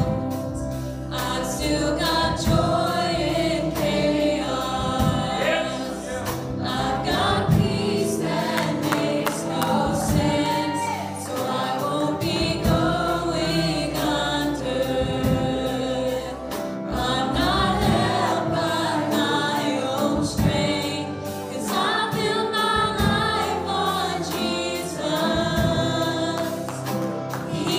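A teen choir singing a gospel worship song with steady instrumental accompaniment.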